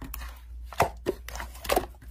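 Hands squishing and kneading thick, fluffy yellow slime, giving a string of small, irregular pops and crackles.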